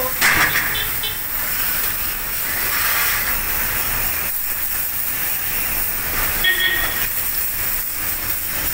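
Steady hiss of a pressurised water jet from a spray-gun nozzle playing into an air conditioner's outdoor condenser unit to wash it out.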